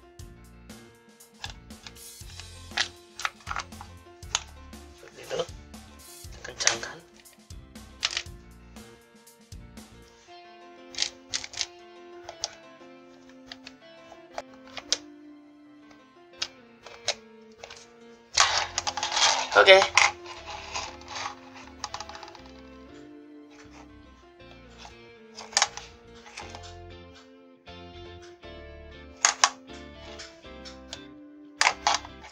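Background music with sustained notes, over irregular clicks and knocks of a plastic dimmer-socket housing being handled and fitted together, with a louder burst of handling noise lasting about two seconds near the middle.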